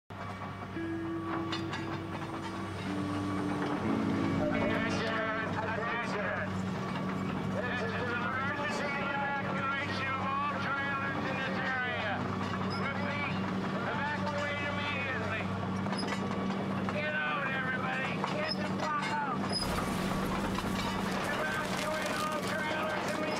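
Tracked excavator's diesel engine running with a steady low hum, and a voice rising and falling over it through most of the stretch.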